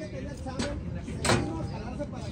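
Faint background voices over a low outdoor rumble, with a short click and then a sharper knock a little past one second in.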